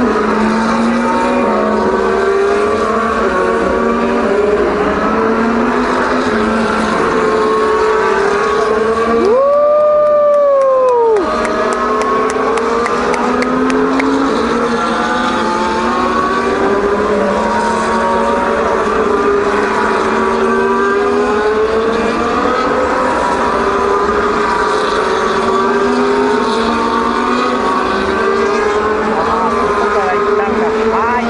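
Several Formula One cars' turbocharged V6 engines running at once on the wet circuit, their pitches wavering up and down as they rev and lift. About nine seconds in, one engine stands out, its pitch swelling up and falling back over about two seconds.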